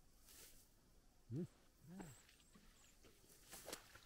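Near silence: faint outdoor background, broken by one short spoken word about a second and a half in.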